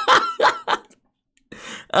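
A man laughing in short breathy bursts, breaking off about a second in.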